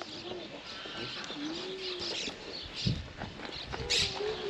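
Soft, low cooing animal calls: two drawn-out gliding tones, each about a second long, with faint chirps between them and a dull thump a little before three seconds in.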